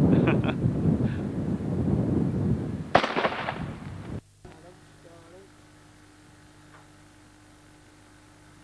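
A single shot from a double-barrelled hammer shotgun about three seconds in: one sharp crack with a short ringing tail, over low wind rumble on the microphone. After it the sound drops to a faint steady hum.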